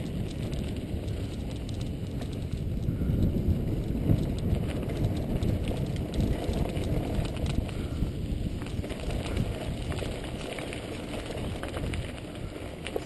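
Mountain bike rolling along a dirt track: a steady low rumble of tyres on packed earth and gravel, with scattered clicks and rattles from the bike, heard through a camera mounted on the moving bike.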